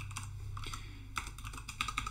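Typing on a computer keyboard: several separate keystrokes, unevenly spaced.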